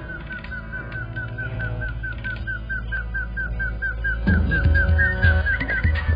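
Film background score for a tense moment: a high chirping whistle figure repeating about five times a second over a low drone. Heavy drum beats come in about four seconds in.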